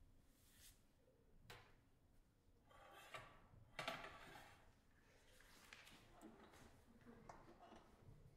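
Near silence with a few faint paper rustles and light taps of sheet music being arranged on a music stand, the loudest a little before the middle.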